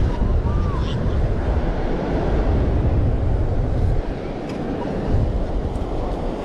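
Wind buffeting the microphone over the wash of surf on a beach, a steady rumbling noise throughout. About half a second in, the metal detector gives one short beep.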